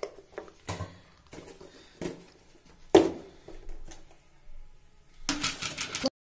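A steel spoon clinking against a steel pan of water as it is stirred: a few scattered knocks, the loudest about three seconds in.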